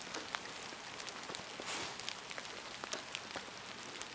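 Rain falling on wet grass and ground: a steady soft hiss with scattered drop ticks.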